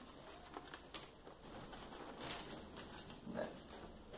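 Faint rustling and crinkling of a sheet of self-adhesive contact paper being handled, with a few short crackles.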